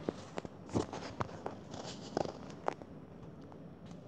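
Handling noise from a hand moving right at the recording phone: a scatter of light taps and knocks, about a dozen over the first three seconds, then fainter.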